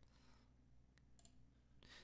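Near silence: faint room hum with a couple of small clicks about a second in.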